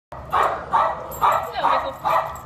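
A dog barking four times in quick succession, excited.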